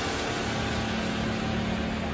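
Steady rushing noise with a faint low hum underneath, the sound effect of an animated title intro.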